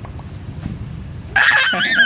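A toddler's high-pitched squeal of laughter: one short burst starting about a second and a half in and lasting well under a second.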